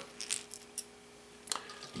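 A few light clicks and clinks of small fishing tackle being handled and set down.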